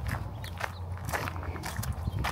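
Footsteps crunching on wood-chip mulch, about two steps a second, over a steady low rumble.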